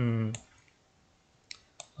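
Two quick computer mouse clicks, about a third of a second apart, near the end.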